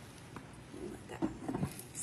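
A few light knocks and clicks in the second half as a glass pan lid is set down onto the frying pan.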